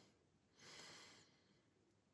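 Near silence: room tone, with one faint soft hiss lasting under a second, starting about half a second in.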